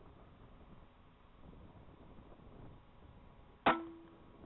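A single air rifle shot near the end, a sharp crack with a brief ringing tone after it. Before it there is only faint low background noise.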